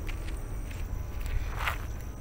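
Footsteps of a person walking, over a steady low rumble, with a louder rustle about one and a half seconds in.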